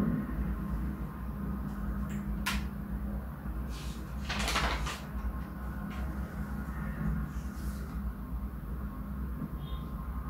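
Steady low room hum, with a single sharp click about two and a half seconds in and a short burst of noise, about half a second long, a little before the middle.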